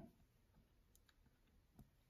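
Near silence: room tone, with a few faint clicks, the clearest just before the end.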